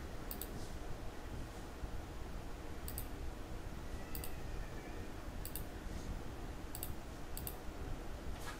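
Computer mouse clicks, about seven sharp ticks spaced a second or so apart, several coming as quick press-and-release pairs, over a low steady hum.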